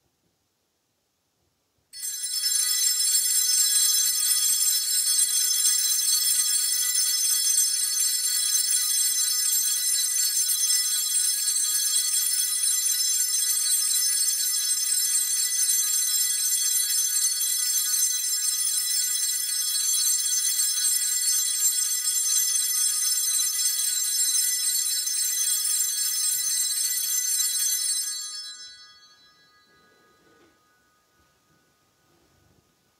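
Altar bells rung without a break, marking the benediction blessing with the monstrance. A bright, high ringing of many tones starts suddenly about two seconds in, holds steady for some 26 seconds, then stops and rings out over about two seconds near the end.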